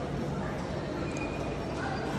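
Steady indoor shopping-centre background: an even hum with faint distant voices, and no single distinct sound standing out.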